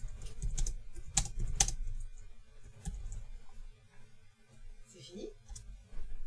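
Clicks and taps on a computer keyboard, a few sharp ones in the first two seconds and fainter ones after, over a low background rumble.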